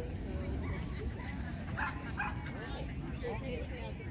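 A dog barking twice, two short barks close together about two seconds in, over the chatter of a crowd of people.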